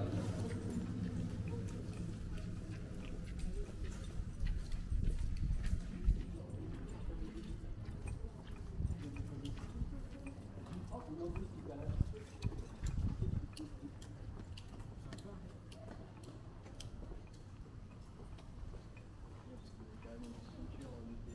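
Footsteps on wet pavement, a steady run of short steps, over a low city rumble with indistinct chatter from passers-by.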